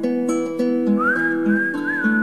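Instrumental passage of a folk-style song: a fingerpicked acoustic guitar plays a repeating pattern under a high, held lead melody line that slides up into a new note about halfway through and bends again near the end.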